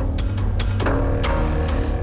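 Broadcast background music with a steady low bass pulse and regular sharp percussive hits, played as the studio audience's vote is tallied and shown.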